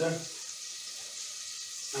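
Butter starting to melt and sizzle faintly in a hot stainless steel pot on a gas hob: a soft, steady hiss.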